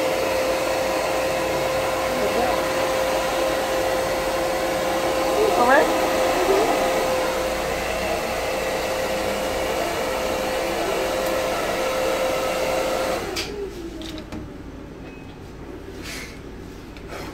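Corded electric hair clippers running with a steady buzz while cutting short hair. The buzz stops near the end.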